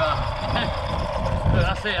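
People talking over a low rumble of wind on the microphone.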